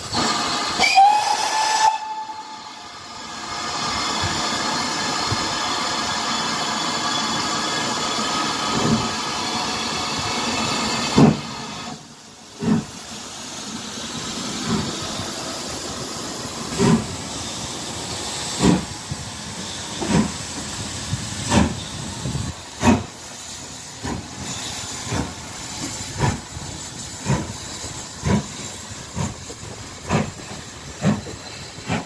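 GWR Manor-class 4-6-0 steam locomotive No. 7827 gives a short, very loud whistle about a second in, rising slightly in pitch. A steady hiss of steam follows. Then, as it starts the train, its exhaust chuffs begin, quickening from about one beat every two seconds to nearly one a second.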